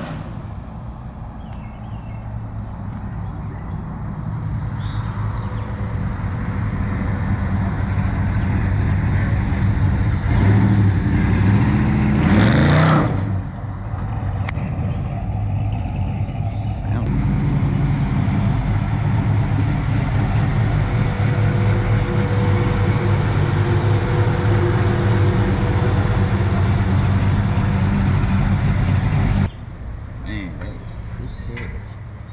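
The LSX 454 V8 of a 1972 Oldsmobile 442 Cutlass running, its revs climbing from about ten seconds in to a peak near thirteen seconds, then dropping back. It then runs on steadily.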